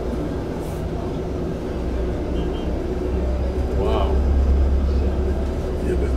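A vehicle's engine running with a deep, steady rumble, heard from inside the cabin as it crawls through traffic. The rumble grows louder in the middle. Street voices come through, one briefly about four seconds in.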